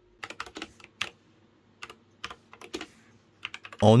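Typing on a computer keyboard: irregular runs of keystrokes with a short pause about a second in.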